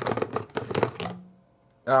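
A man quickly gulping coffee from a mug: a rapid run of short clicky swallowing and slurping sounds for about a second, then a brief hummed 'mm'. After a short gap comes an 'ah' right at the end.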